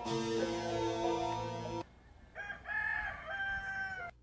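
Guitar music that stops abruptly about two seconds in, then a rooster crowing once, one long call of several joined parts.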